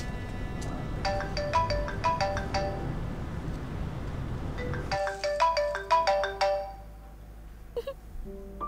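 A mobile phone ringtone: a short, bright melody of beeping notes, played once about a second in and again at about five seconds. A low background sound under the first one drops away just as the second begins.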